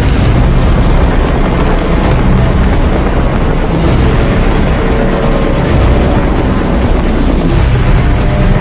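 Steady, heavy wind noise on the microphone mixed with the running engines of motor scooters, recorded from a moving scooter.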